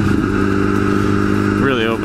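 Kawasaki ZX-10R inline-four engine running at a steady cruise, its drone held at an even pitch apart from a small shift just after the start.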